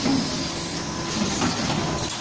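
Automatic rotary premade pouch packing machine with auger filler running: a steady, dense mechanical noise.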